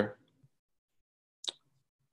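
A pause between spoken words: the end of a word at the start, then near silence broken by one short click about one and a half seconds in.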